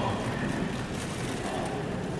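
A pause in a talk: steady background noise of a large hall, an even hiss and hum with no distinct event.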